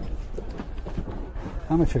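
A few light knocks and clicks, irregularly spaced, over a steady low rumble; a man starts speaking near the end.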